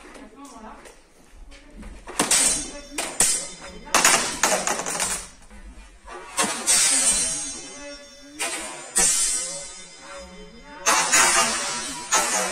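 Steel katana blades clashing in sparring: a series of sharp metallic strikes from about two seconds in, each ringing briefly and fading, some in quick pairs.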